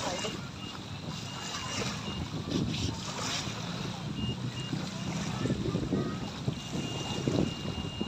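Small waves lapping and splashing against the shoreline in uneven surges, with wind buffeting the microphone.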